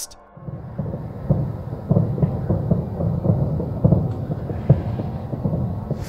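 A dense, continuous crackle of many overlapping bangs and pops, like thousands of fireworks going off at once, heard across a night sky. No fireworks were planned, and its cause is unexplained.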